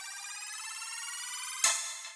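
Electronic intro sound effect: a high, shimmering synth tone slowly rising in pitch, ending in a short bright swoosh about one and a half seconds in as a video transition plays.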